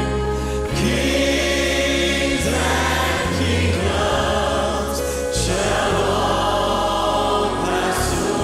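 A church choir and praise team singing a slow gospel song together, with held chords from piano, keyboard and bass guitar underneath.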